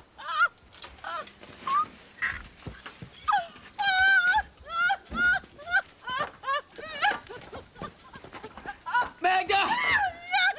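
A woman whimpering and wailing in fear: short, high, wavering cries in quick succession, with a longer wail about four seconds in and louder cries near the end.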